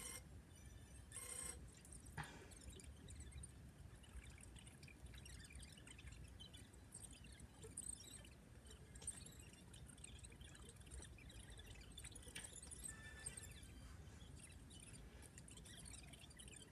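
Near silence: faint room tone with a low rumble and scattered faint high ticks.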